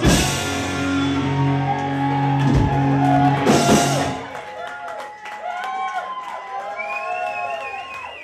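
Live rock band with electric guitars and drums ending a song on a held chord with cymbal crashes, stopping about four seconds in. After that the audience cheers, with shouts, whoops and a whistle.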